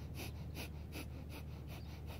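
Breath of fire, the rapid Kundalini yoga breath: short, even, forceful exhalations through the nose, about four a second, soft against the surrounding talk.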